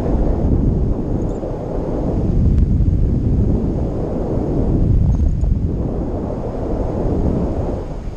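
Wind buffeting the action camera's microphone in paraglider flight: a loud, low rumble that rises and falls in waves.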